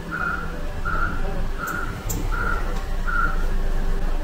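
John Bean wheel balancer running with a wheel mounted: a steady low machine hum, with a high whistle-like tone pulsing evenly about every three-quarters of a second.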